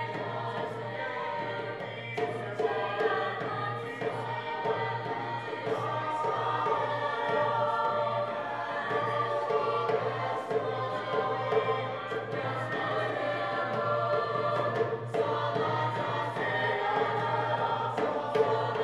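Mixed-voice high school choir singing together, accompanied by a drum beating under the voices.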